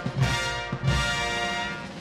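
Military brass band playing a march, with brass chords over a steady drum beat.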